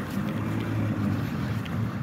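A steady low rumble with a hum.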